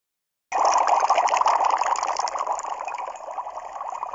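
Title-card sound effect: a steady, hissing noise that starts suddenly about half a second in and slowly fades away.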